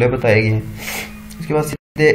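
A man speaking in a lecture, drawing an audible breath about a second in. Just before the end the audio cuts out completely for a split second.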